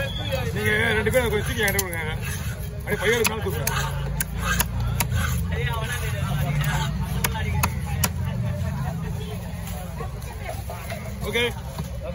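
Sharp knocks of a knife and cleaver striking a wooden chopping block as fish is cut, repeated irregularly, over a busy market's background of voices and a low traffic rumble.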